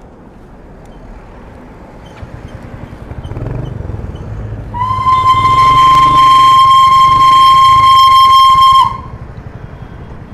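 Darjeeling toy-train steam locomotive sounding its whistle: one long, steady blast of about four seconds that starts about five seconds in and cuts off sharply. A low engine rumble runs underneath.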